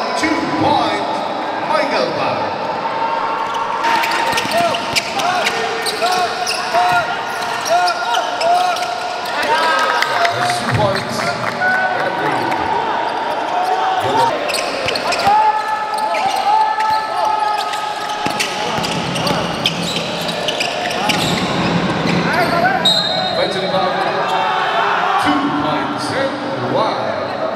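Live game sound on an indoor basketball court: the ball bouncing on the hardwood floor and sneakers squeaking, with players' voices carrying in the hall.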